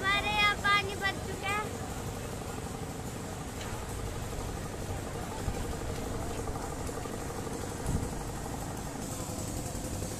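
A child's high voice in the first second and a half, then a steady outdoor street din with a faint engine hum from passing traffic.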